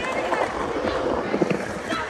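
Skateboard wheels rolling on a concrete bowl, an uneven rumble with a few low knocks, with children's voices calling out.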